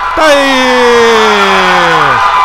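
A man's voice drawing out one long syllable, "Tá…", for about two seconds, its pitch sliding slowly downward.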